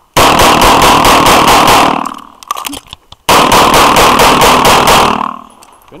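Semi-automatic pistol fired in two rapid strings of shots, about five a second, with a pause of about a second between the strings. The shots are loud enough to overload the microphone.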